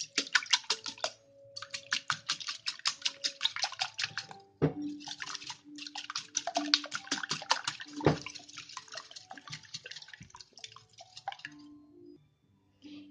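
Wire whisk beating raw eggs in a glass bowl: quick, even clicking strokes of the wires against the glass, about eight a second, pausing briefly twice, with a couple of duller knocks of the bowl along the way.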